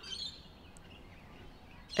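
Quiet outdoor garden background, a low even hiss, with a faint, brief bird chirp about the middle.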